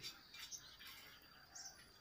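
Near silence with a faint, high bird chirp about one and a half seconds in.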